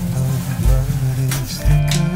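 Background music: plucked guitar over a deep bass note that lands about once a second.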